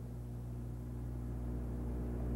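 Room tone in a pause between speech: a steady low hum with faint hiss.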